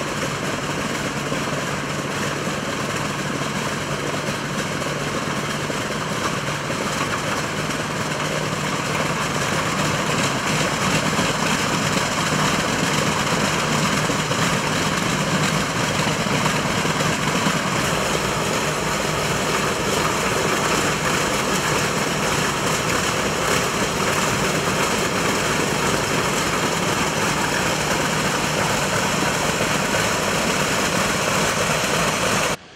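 Douglas DC-7's Wright R-3350 radial piston engines running on the ground with propellers turning, a steady, loud drone. The sound grows louder about ten seconds in and holds there.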